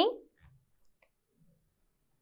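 The last syllable of a spoken word fades out, followed by near silence with a very faint click about a second in.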